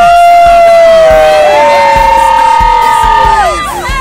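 Fans shouting long, loud held cheers, one voice from the start and a second, higher one joining about a second and a half in, both falling away near the end, with a music beat underneath.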